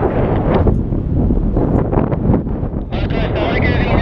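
Wind buffeting the camera microphone in paraglider flight: a loud, steady rumble that rises and falls.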